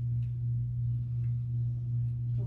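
A steady low hum: one unchanging tone with a fainter higher overtone.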